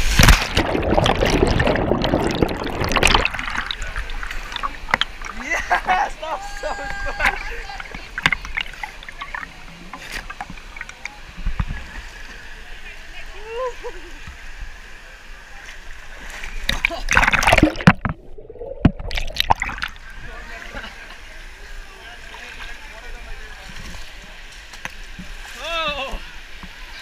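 Water rushing and splashing close to the microphone as someone rides a water slide, loudest in the first three seconds. A second loud splash comes about 17 seconds in, after which the sound is briefly muffled.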